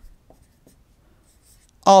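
Faint scratching of a felt-tip marker writing and circling on paper. A man's voice starts again near the end.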